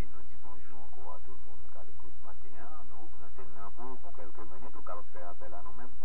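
A voice speaking continuously over a steady low hum.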